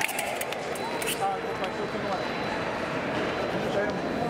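Background babble of voices in a large hall, with a few sharp clicks in the first second or so from the foil exchange: blades striking and feet landing on the metal piste.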